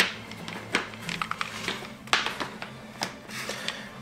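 Scattered light clicks and taps of a small tubing cutter being handled and seated onto copper pipe close against a flare nut.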